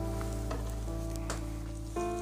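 Soft background music: a sustained synth chord held steady, with a few faint clicks.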